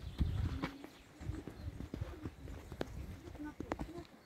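Faint voices of people close by, mixed with scattered, irregular knocks and clicks and a low rumble about a quarter of a second in.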